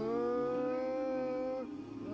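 A man's voice singing one long held note, sliding up slightly at the start and then held steady, breaking off near the end.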